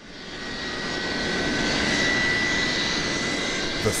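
Jet airliner engines running on the ground: a steady high whine over a rush of noise, fading in over the first second and then holding.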